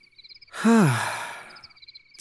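A person's long, breathy sigh with a falling pitch, starting about half a second in and fading away over about a second. Crickets chirp steadily behind it.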